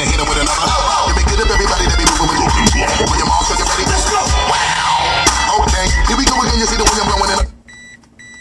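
Hip hop music played loud through a car stereo with a Bazooka 6.5-inch subwoofer, heavy in the bass, heard inside the car. The music cuts off suddenly near the end and a short high beep follows.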